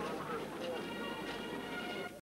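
Several people talking at once in a passing crowd, with a steady held musical chord coming in under the voices less than a second in.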